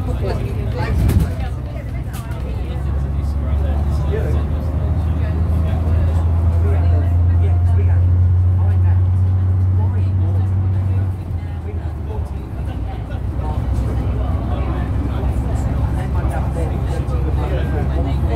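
Bristol VR double-decker bus's diesel engine heard from inside the cabin, a deep drone that builds and holds for several seconds, then drops away suddenly about eleven seconds in before rising again. A single sharp knock sounds about a second in.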